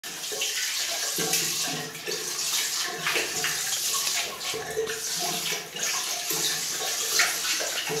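Water running from a bidet's jet into the ceramic bowl, splashing unevenly as a Weimaraner puppy laps and snaps at the stream.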